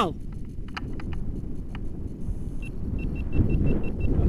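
Wind buffeting the helmet-camera microphone, a loud low rumble, with a few light clicks. From about two and a half seconds in comes a run of short, evenly spaced high beeps.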